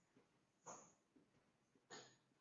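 Near silence, with two faint, brief scratches of a marker writing on a whiteboard, about half a second in and near the end.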